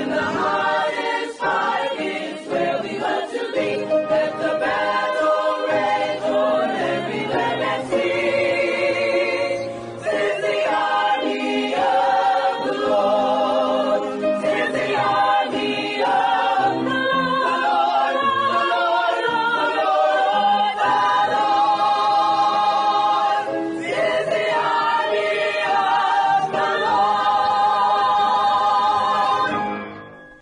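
A choir singing a gospel song, with long held notes and vibrato; the singing stops abruptly near the end.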